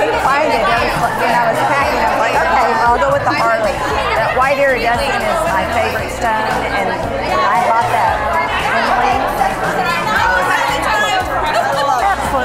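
A woman talking, over background music and the chatter of other people.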